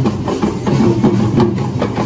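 Traditional Sri Lankan drums played by dancers in a perahera procession, beaten by hand in a fast, dense rhythm of strokes.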